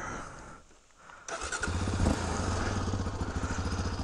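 Yamaha Raptor 700R quad's single-cylinder engine being started: a brief burst about a second in as the starter turns it over, then it catches and idles with a rapid, even beat.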